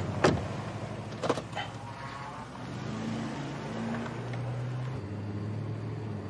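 A car engine running steadily, with two sharp knocks about a second apart near the start, like car doors being shut.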